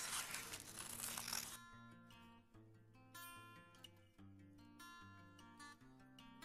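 Scissors cutting through a napkin laminated with clear packing tape, a crinkly rasp for about the first second and a half that stops abruptly. Soft acoustic guitar background music follows on its own.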